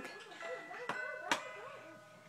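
Electronic toy play house giving out faint steady tones, with a small child's soft wavering vocalizing over them and two light clicks about a second and a second and a half in.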